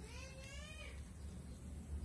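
A single short vocal call, under a second long, its pitch rising slightly and then falling away at the end.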